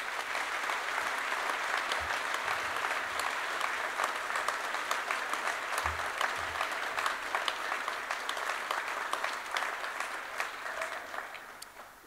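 Audience applause, many hands clapping steadily; it starts suddenly and dies away near the end.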